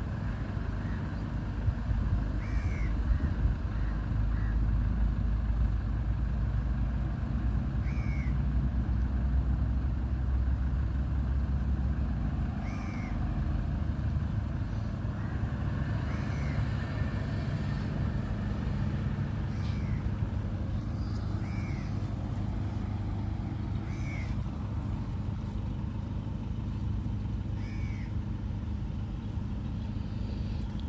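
Low rumble of a distant jet airliner, loudest in the first half and then fading away. A bird gives a short high call over it about every two to four seconds.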